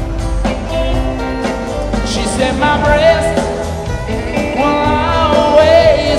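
Live rock band playing a country-blues song, with a male lead vocal over strummed acoustic guitar. The singer holds long, wavering notes in the second half.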